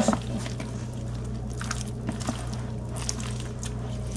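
A spatula stirring mayonnaise-dressed bow-tie pasta salad in a glass bowl: soft wet stirring with a few faint clicks of the spatula against the glass.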